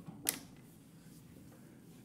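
A single short click about a third of a second in, over faint room tone.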